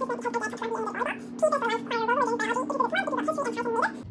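A woman's voice sped up into a fast, garbled, unintelligible gabble, with a steady low tone underneath.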